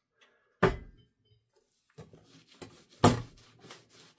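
Two short, sharp thuds about two and a half seconds apart, made by handling things on a desk, with faint rustling and small clicks between them.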